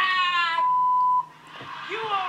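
A high-pitched shouted voice, then a steady single-tone censor bleep, about half a second long, that cuts off abruptly. The bleep masks a swear word in the roast.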